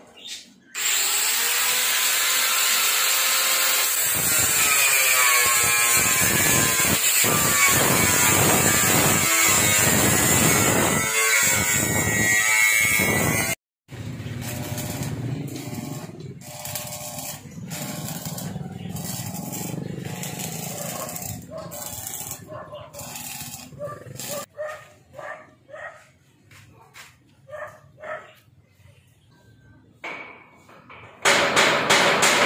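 Metalwork on a steel gate: a loud power tool runs for about thirteen seconds, its pitch shifting as it works. After an abrupt cut comes the irregular crackle and sputter of arc welding on the gate bars, thinning out to scattered knocks near the end.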